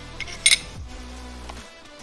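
A few light metallic clicks from the slide and recoil spring assembly of a field-stripped Taurus G3 pistol being handled, the loudest about half a second in, over background music with a steady beat.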